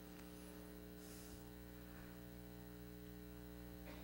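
Near silence with a steady electrical mains hum.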